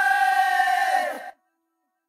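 Closing held note of a Bhojpuri Holi song, with the bass and drums dropped out. The note cuts off about a second in, leaving silence as the track ends.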